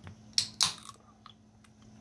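Ring-pull aluminium drinks can of carbonated guava soda being opened: a sharp click as the tab breaks the seal, then a short hiss of escaping gas, followed by a couple of faint ticks.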